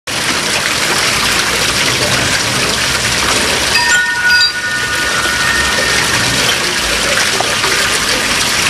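Steady splashing rush of falling water in a garden pond, with a brief chime-like ringing about halfway through.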